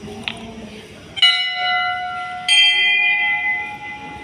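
Metal temple bell struck twice, just over a second apart, each strike ringing on with several clear tones that slowly fade.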